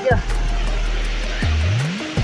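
A man's voice briefly at the start, then steady rushing outdoor noise with a strong low hum and background music; a rising voiced sound comes near the end.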